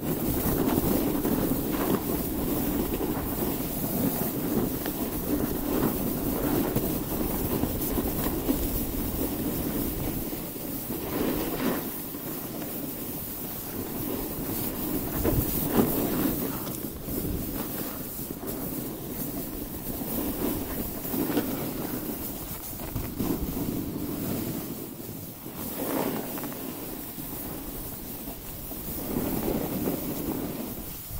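Wind rushing over the microphone and the steady scraping rumble of a board or skis sliding over packed snow on a downhill run, with several louder swells.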